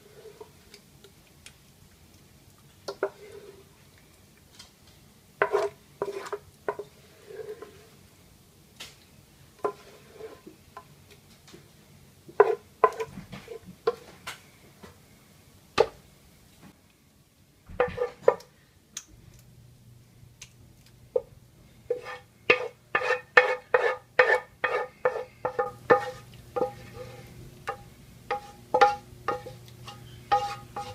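A wooden spoon scrapes and scoops thick, wet chicken filling out of a pan in scattered, irregular scrapes and plops. From about two-thirds of the way in, background guitar music with evenly plucked notes comes in and carries on to the end.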